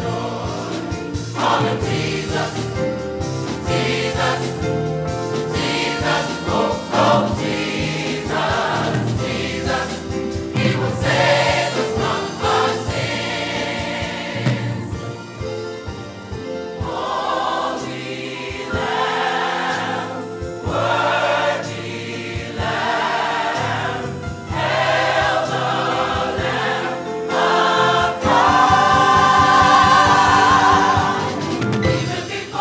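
Church choir singing in full voice, growing louder near the end.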